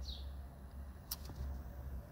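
Faint, steady low hum of a small motorised display turntable turning, with one sharp click about a second in.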